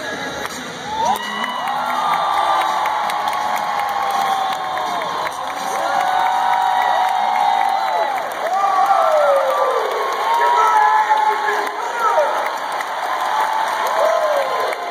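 Arena crowd cheering, with many high-pitched voices holding long cheers that rise and fall over one another in waves.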